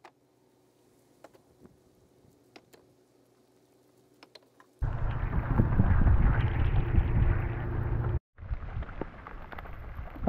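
Rain and wind noise on the camera microphone: a loud rush with a heavy low rumble that starts about halfway through, cuts out for a moment, then goes on more softly. Before it there are only a few faint knocks.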